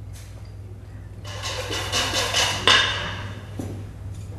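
Olive oil poured from a bottle over a baked fish: a noisy pour of about a second and a half, starting a little over a second in, ending with a sharper, louder knock and a small click near the end.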